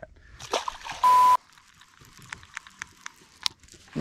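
A small fish tossed overboard lands in the water with a light splash, followed about a second in by a short, sharp-edged beep: a burst of hiss with a steady tone, the loudest thing here. A few faint clicks follow in the quiet.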